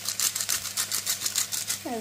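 Hand-held pepper mill grinding black pepper, a fast run of dry clicks at about ten a second that stops just before the end.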